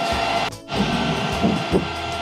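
Steady electrical whine and low hum of a DC fast-charging station's power cabinet and cooling fans, running while it charges an EV. The sound drops out briefly about half a second in, then resumes unchanged.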